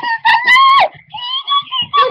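A young girl screaming in a high pitch: one long held scream that breaks off a little under a second in, then a second one that starts just after.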